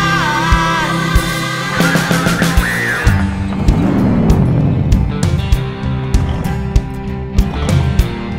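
Blues-rock song playing with a steady drum beat and electric guitar, a sung line trailing off in the first second. About four seconds in, a sound slides down in pitch over a second or so.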